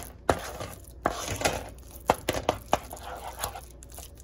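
Wooden spoon stirring and scraping through thick tomato paste and onions frying in a pot, with irregular knocks and scrapes against the pot.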